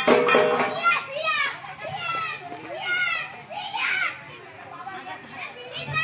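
Music stops about a second in, followed by a run of short, high-pitched gliding vocal cries roughly once a second, with voices chattering beneath.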